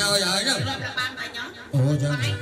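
A man's voice speaking, with light chuckling.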